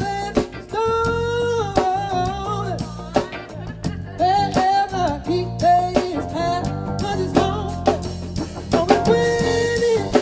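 Live soul band playing: a male lead vocal holds long sung notes over electric guitars, bass and a drum kit.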